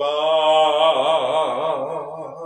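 A man singing one long held note with a wide, even vibrato over a steady low note, fading a little near the end.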